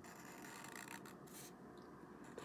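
Faint rubbing of a felt-tip marker drawing lines on paper, with a few short strokes standing out after about a second.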